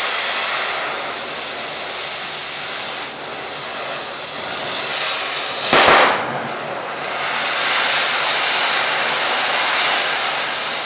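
Oxy-fuel cutting torch hissing steadily as it cuts through the heads of rusted, seized bolts, with one brief louder burst a little past the middle.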